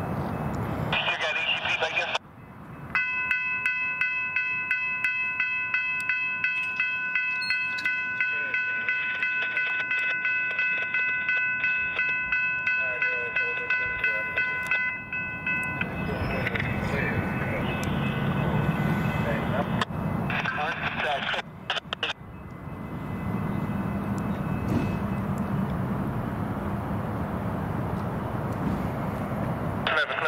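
Railroad grade-crossing bell ringing rapidly, about three strokes a second, then stopping abruptly as the crossing gates rise. A broad rumbling noise follows.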